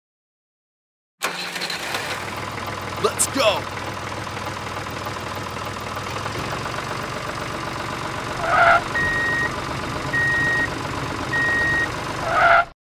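Tractor engine running steadily, cutting in abruptly about a second in after silence. A short, louder sound comes just before three evenly spaced reversing beeps near the end, the alarm of a vehicle backing up.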